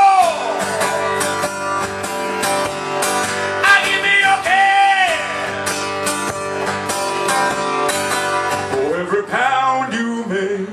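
Acoustic guitar strummed steadily and hard, with a man singing long notes that rise and fall in pitch, three times across the passage.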